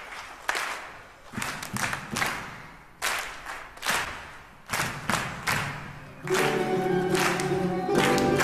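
Sharp hand claps or percussive strikes in a loose rhythm, several seconds' worth, each with a short ring. About six seconds in, sustained music from the orchestra and children's choir comes in and holds steady.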